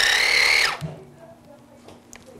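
Electric ear-irrigation pump running with a steady whine over the hiss of the water jet, its pitch stepping up just at the start, then cut off abruptly a little under a second in.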